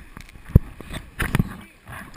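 Handling noise on a waterproof action camera: fingers knocking and rubbing on its housing, with a sharp knock about half a second in and a few rough scrapes a little after one second.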